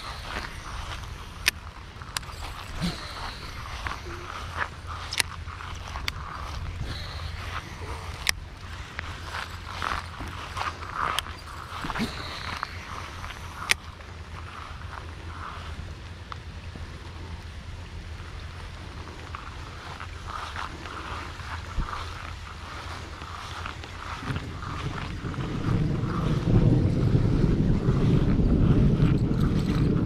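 Baitcasting reel being cranked to retrieve a lure, with scattered sharp clicks and handling noise from the rod and reel. In the last few seconds a louder low rumble of wind on the microphone covers it.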